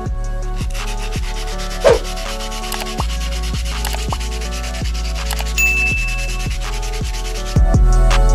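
Sandpaper rubbed rapidly back and forth by hand along a rusty steel box bar, a dense run of scraping strokes. A short clear ding sounds a little past the middle.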